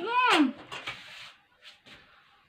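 Muffled, wavering hum-like vocal sound from a person with a mouthful of marshmallows, ending about half a second in. Quieter breathy noise follows, then a couple of faint clicks near the end.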